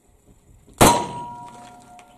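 A single revolver shot about a second in, then the hit steel plate ringing with a clear tone that fades away over the next second. It is the last shot of the string; the time is read out just after.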